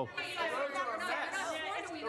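Overlapping voices of audience members talking over one another off-microphone, disrupting a public meeting.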